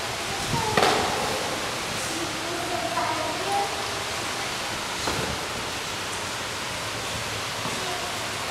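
Steady rushing background noise with brief, faint snatches of voices from people nearby, about a second in and again around three seconds in.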